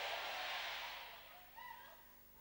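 The echo of a shouted man's voice dying away in a large reverberant room over about a second, then faint distant voices of the congregation.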